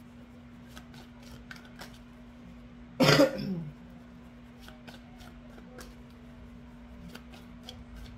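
A woman coughs once, a short harsh burst about three seconds in.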